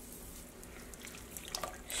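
Faint dripping and sloshing of water as a wet yarn skein is lifted and moved about in a pot of dye bath, with a few small drips and splashes near the end.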